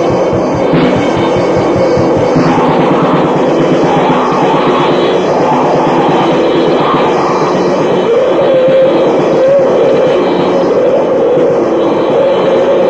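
Raw black metal from a 1995 cassette demo: a loud, dense wall of distorted guitar and drums with no breaks.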